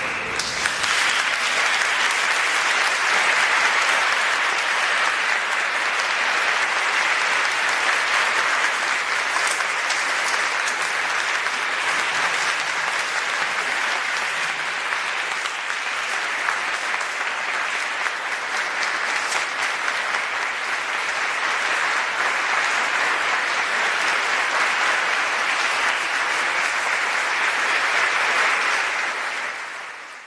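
Audience applauding, starting suddenly right after the music ends, holding steady, and fading out near the end.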